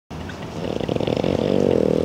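French bulldog puppy growling, a low pulsing grumble that builds louder over two seconds and stops abruptly.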